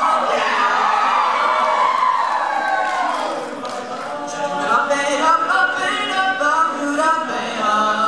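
All-male a cappella group singing, a lead voice over layered backing voices with no instruments. A long vocal slide falls in pitch over the first three seconds or so, then the group sings held chords.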